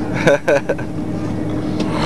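Steady interior cabin noise of an Airbus A330-200 airliner taxiing after landing, heard from a window seat: an even rush of engine and airflow noise with a constant low hum under it.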